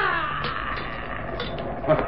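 A man's pained cry, falling in pitch and fading away in the first half-second, then a quieter stretch of muffled noise, from a radio-drama struggle in which his arm is being wrenched.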